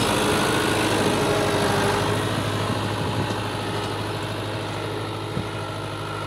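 New Holland 640 tractor's diesel engine running steadily under load while pulling a 13-tine cultivator through the soil, growing slowly fainter as the tractor moves away.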